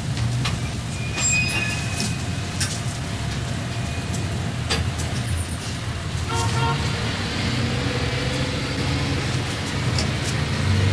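Street traffic rumbling steadily, with a vehicle horn sounding briefly about six seconds in and a few light clicks.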